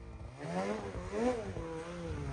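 Polaris snowmobile's two-stroke engine revving up and falling back twice as the sled works up a steep slope in deep snow.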